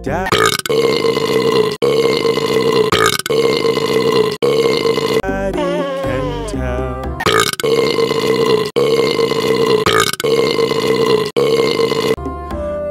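A string of long, loud burps, each lasting about a second, one after another, edited in over the song's backing music in place of the sung lyrics. There is a break of a couple of seconds midway.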